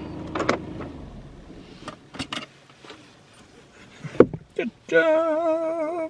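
Inside a car: a low hum fades out in the first second, a few short clicks and knocks follow, then near the end a steady, slightly wavering tone about a second long that cuts off abruptly.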